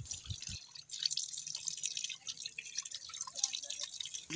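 Water running from an outdoor tap and splashing onto wet ground, an irregular patter of drips and splashes.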